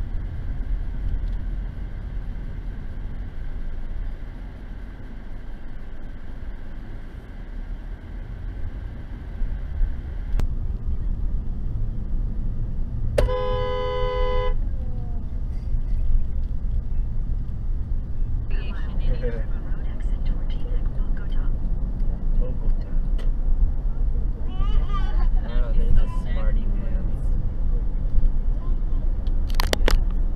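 Steady road and engine rumble inside a moving car, with a car horn sounding once for about a second near the middle. Indistinct voice-like sounds follow in the second half.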